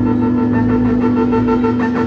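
Live rock band's amplified sustained drone: a loud, steady held chord of several tones, with no beat.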